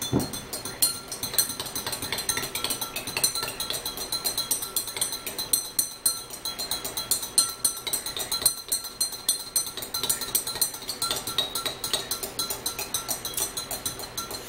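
A spoon stirring apple cider vinegar and water in a glass, clinking quickly and evenly against the sides, several strikes a second with a light ring.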